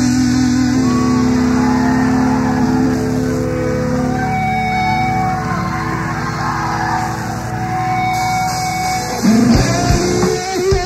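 Live stoner rock: distorted electric guitars holding long, sustained chords, with a louder new riff coming in about nine seconds in.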